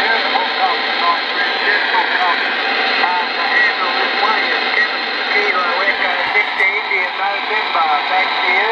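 RCI-2980 radio receiving on the 11-metre band around 27.355 MHz: a steady hiss of band static with faint voices of a distant station coming through it.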